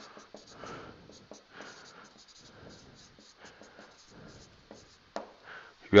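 Marker pen writing on a whiteboard: a run of faint, short scratching strokes as a line of capital letters is written.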